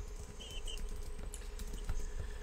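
Quiet pause in a room: a steady low rumble with a few faint scattered clicks and taps, and a short pair of faint high beeps about half a second in.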